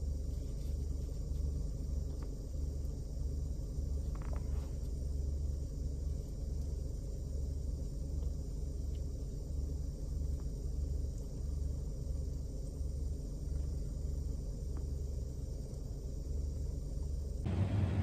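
Car idling: a low, steady rumble heard inside the cabin.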